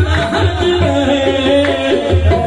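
Live qawwali music: a harmonium playing the melody over a steady tabla beat.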